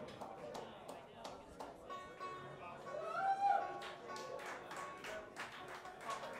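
Audience clapping to call the band back for an encore, with crowd voices and a few sliding pitched notes in the middle.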